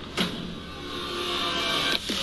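Movie-trailer sound effects: a sharp hit a moment in, then a whirring, mechanical drone that builds steadily louder.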